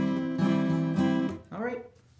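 Steel-string acoustic guitar ringing a C chord: the A minor 7 fingering strummed with a pick from the fourth string down. It is struck again twice, about half a second and a second in, and stops about one and a half seconds in.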